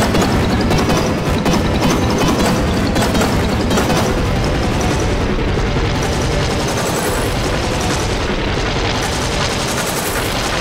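A loud, dense jumble of many logo jingles and sound effects playing over one another, with crackling, booming noise running through it.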